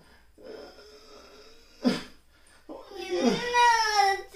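A single short sharp knock about halfway through, then a person's high, wavering wail near the end: a feigned cry of pain in a back-breaking prank.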